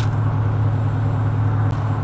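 A vehicle engine idling with a steady low hum, with a couple of faint light clicks over it.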